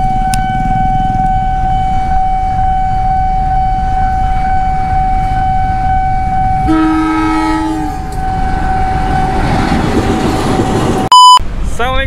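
A steady high warning tone sounds from the level crossing. About seven seconds in, a CC201 diesel locomotive blows its horn, a chord held for about a second, and then the rumble of the passing train builds. Near the end a short, very loud electronic beep cuts in.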